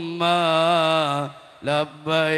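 A man's voice chanting through a microphone: one long held note that dips in pitch about a second in and breaks off, then a short syllable near the end.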